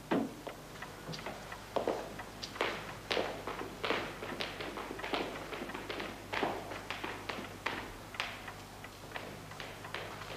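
Footsteps at an even walking pace, about three steps every two seconds.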